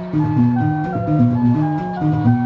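Small synthesizer keyboard playing a looping melody of held notes that step up and down, over a repeating bass figure.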